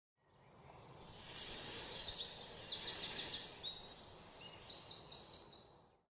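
Birds singing in an outdoor ambience, with runs of quick repeated downward-sweeping notes heard twice over a high steady hiss. It fades in during the first second and fades out at the end.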